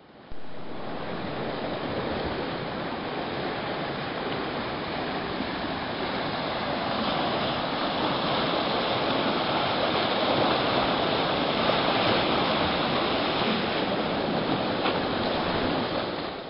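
Steady rush of water churning through a concrete fish ladder at a herring run, cutting in just after the start.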